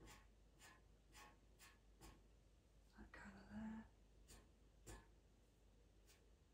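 Pastel pencil scratching in short, quick strokes across pastel paper, a faint stroke every half second or so. About halfway through there is a brief, soft voice sound.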